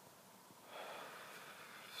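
A smoker breathing out a drag of cigarette smoke: one faint breath starting about a second in and lasting about a second.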